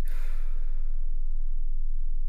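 A man sighing in his sleep: a breathy exhale that starts sharply and fades over about a second, over a steady low hum.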